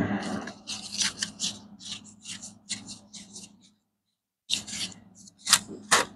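Paper wrapper of a roll of pennies crinkling and tearing as it is broken open. It makes a run of short, scratchy crackles, pauses for about a second about two-thirds of the way through, then gives a few more crackles.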